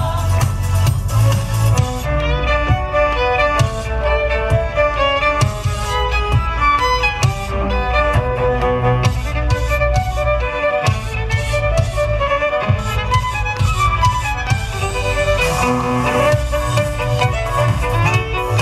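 Three violins playing quick melodic lines in harmony over an amplified backing track with a steady bass and beat.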